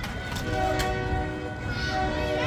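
A freight train rolling past at a grade crossing, its horn sounding a steady multi-note chord that starts about half a second in, over the low rumble of the cars.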